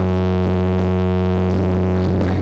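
Live rock band's distorted keyboard holding one low, steady note, with no drums playing under it.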